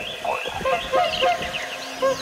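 Many birds calling at once: short chirps and whistled notes that rise and fall and overlap.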